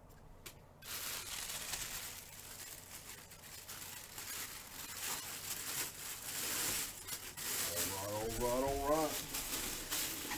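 A clear plastic bag crinkling and rustling as a full-size football helmet is handled inside it, starting about a second in and going on throughout. A short hummed or voiced sound comes in near the end.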